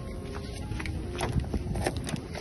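Footsteps and scuffing handling noise from a phone carried along a truck's side, a scatter of short clicks over a steady low street rumble.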